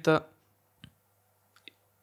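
The tail of a spoken word, then a quiet pause holding two faint short clicks, the second smaller and about three-quarters of a second after the first.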